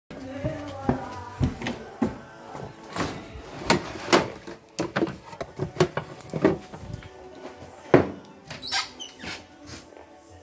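Kitchen handling noises: a refrigerator door and the jars in its door shelf knocking and clinking, then a cupboard door being opened, a series of sharp knocks and clicks with a loud knock near the end.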